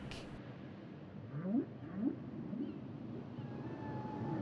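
Humpback whale song: three short rising moans about half a second apart, then fainter, higher drawn-out tones near the end.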